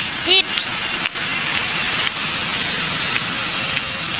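Steady street traffic noise, with a short vocal sound about a third of a second in.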